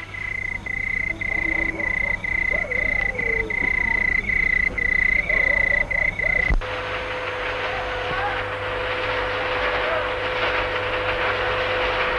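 A steady high-pitched insect trill pulsing a little under twice a second, as night ambience on a film soundtrack. About six and a half seconds in, it cuts abruptly to steady machinery noise with a low hum from a paper-handling machine.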